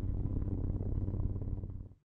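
Low cinematic rumble with a steady low hum underneath, fading out over the last half second and cutting off at the end.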